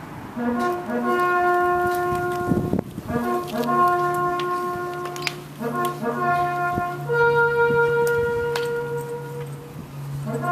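A bugle call, played as the standards are raised and soldiers salute, marking the end of the silence. It is a phrase of short notes rising into a held note, repeated three times, ending on a long high held note. A steady low hum runs underneath.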